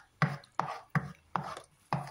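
Wooden spatula stirring thick masala paste in a non-stick pan, knocking and scraping against the pan in a quick regular rhythm of about three strokes a second.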